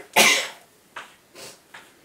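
One loud cough just after the start, followed by chalk writing on a blackboard: a string of short chalk strokes and taps, a few each second.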